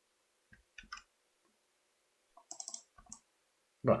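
Faint clicks of a computer mouse and keyboard: a few single clicks in the first second, then a quick run of clicks about two and a half seconds in.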